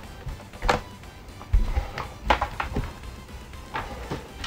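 A few scattered knocks and clicks of a laptop being handled on a workbench as it is turned over and its lid is opened, with faint music underneath.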